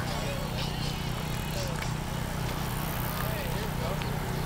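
Faint distant voices of people talking over a steady low background hum outdoors.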